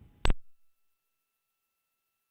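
A single sharp click about a quarter second in, after which the audio drops to near silence, leaving only two faint steady high tones.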